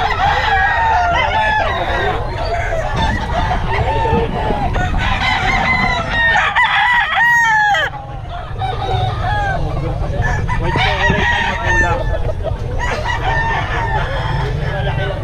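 Many gamecocks crowing and clucking at once, their calls overlapping. One crow stands out louder about halfway through.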